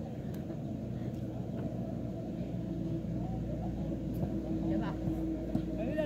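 A steady low engine drone with a held hum runs throughout. Faint voices and a few light knocks sit over it.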